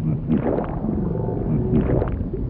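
Cartoon underwater sound effect: low bubbling and gurgling with short sweeping pitch glides, about two a second.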